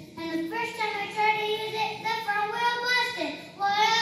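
A child's voice singing a melody, with notes held about half a second each and sliding between pitches.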